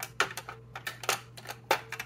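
Eyeliner pencils and liner pens clicking against one another and the clear acrylic organizer as fingers flick through them, a quick irregular series of light clicks over a low steady hum.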